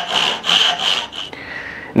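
Carcass saw cutting through wood in short, quick strokes, about four a second, wasting out the cheek of a sliding dovetail; the sawing stops about a second and a half in.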